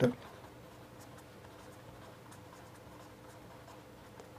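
A marker pen writing lettering on paper: faint, short scratching strokes, over a steady low hum.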